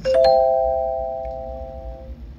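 A chime of three rising notes struck in quick succession, ringing together and fading away over about two seconds.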